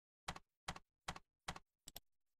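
Computer keyboard typing sound effect: four evenly spaced keystrokes, about two and a half a second, then a mouse-button click near the end.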